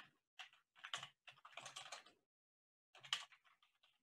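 Faint computer keyboard typing in quick runs of keystrokes, with a pause of almost a second before a last run near the end.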